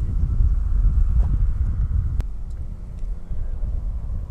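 Wind buffeting the camera microphone, a rough, uneven low rumble, with a single sharp click about two seconds in.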